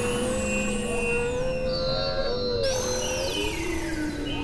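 Experimental electronic drone music from synthesizers: a wavering held tone that drops lower near the end, under high tones that slide down in pitch in steps, over a dense noisy bed.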